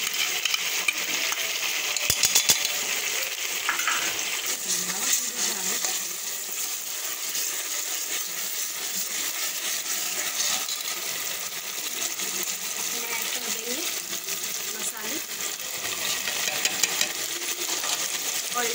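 Onion paste frying in hot oil in a cooking pot with a steady sizzle, stirred and scraped with a metal ladle while the masala base browns. A few sharp metallic clicks come about two seconds in.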